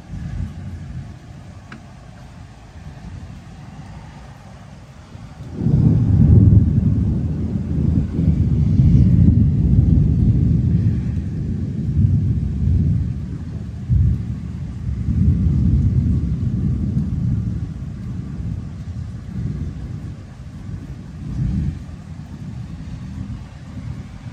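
Thunder from a cloud-to-ground lightning strike. A low rumble jumps sharply louder about five seconds in and rolls on in repeated surges for over ten seconds, then dies down, with one last swell near the end.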